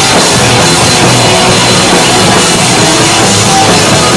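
Punk rock band playing live and very loud, drum kit and amplified instruments making one dense, unbroken wall of sound.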